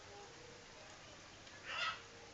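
A single brief squawk, like a chicken's, about one and a half seconds in, over a low steady background.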